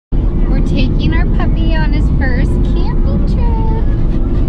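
Steady low rumble of a car cabin on the move, with short high-pitched vocal sounds over it that rise and fall in pitch and end in a held tone near the end.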